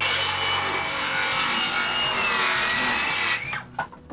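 Handheld circular saw cutting through a plywood sheet: a loud blade-and-motor whine that sags slightly in pitch under load, stopping about three and a half seconds in.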